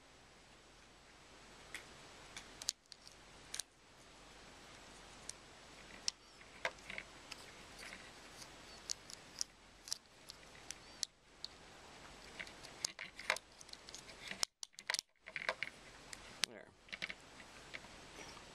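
Small plastic clicks and taps, scattered irregularly, as the clear plastic gearbox and motor of a mechanical light timer are handled and pressed back together, over a faint steady hiss.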